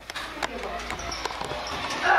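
A few light knocks and taps spread over two seconds, with faint voices in the background.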